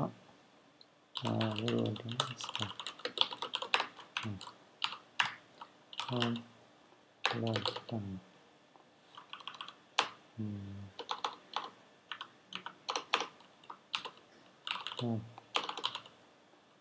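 Typing on a computer keyboard: irregular runs of keystroke clicks as code is entered, with short spoken words between them.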